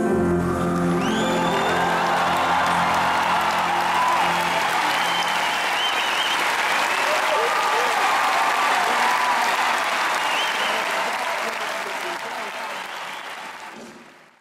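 A large arena audience applauding and cheering, with high whistles and shouts through the clapping, just as a sung chord cuts off. A low band chord holds under the applause for the first four seconds or so, and the whole sound fades out near the end.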